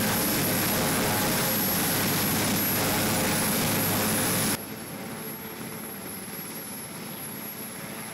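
Steady noise of a parked Sea King helicopter's engines running, with a thin high whine. About four and a half seconds in, the level drops abruptly to a quieter steady noise.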